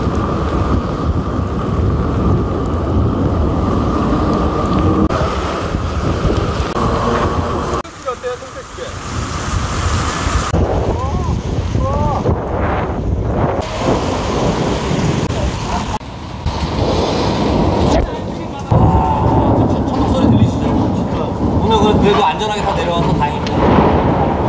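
Heavy rain and wind noise on a bike-mounted camera's microphone during a mountain-bike ride through a downpour on wet city streets, with the hiss of tyres on the water-covered road. The sound changes abruptly several times.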